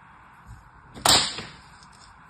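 A knife set down with a single sharp clack about a second in, followed by a brief rattle.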